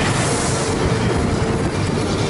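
Loud, steady road and traffic noise from a car driving on a broken, potholed road, with a semi-trailer lorry passing close by.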